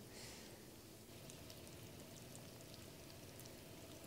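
Faint sizzling and crackling of hot oil as meat-filled dough balls shallow-fry in a pan over gentle heat.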